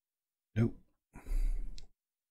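A man's sigh, a breathy exhale lasting under a second, just after a spoken "nope".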